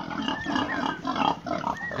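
Pigs grunting close by, a string of short, irregular sounds.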